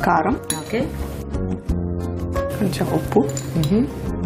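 A metal spoon clinking against a stainless-steel bowl over background music.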